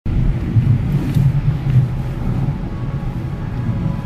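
Low, steady rumble of a Kia car's engine and tyres, heard from inside the cabin as the car rolls slowly forward.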